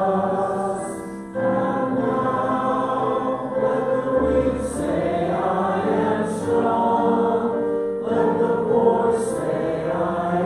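A worship song sung by several voices together, led by a woman and a man at microphones, with acoustic guitar and Roland keyboard accompaniment. The notes are held and sustained, with a short dip between phrases just over a second in.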